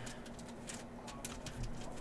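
Faint light clicks of a trading card being handled in the fingers, over a steady low hum.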